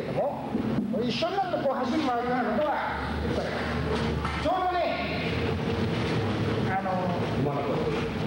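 Speech: voices talking in a large hall, indistinct and over a continuous hiss.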